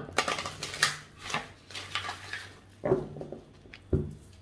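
A deck of oracle cards being shuffled by hand: a quick run of papery clicks and rustles, then a single knock near the end.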